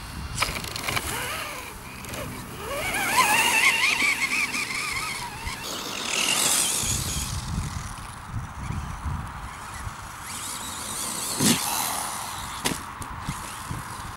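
Electric RC buggy driving across grass: the motor's whine rises in pitch as it accelerates a few seconds in, over rough rumbling from tyres and chassis. A sharp knock comes later on.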